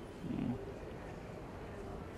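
A man's brief, low, quiet murmur about half a second in, then faint steady background noise.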